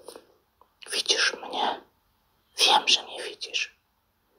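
Speech only: a voice, soft and close to whispered, says two short phrases, one about a second in and one about two and a half seconds in.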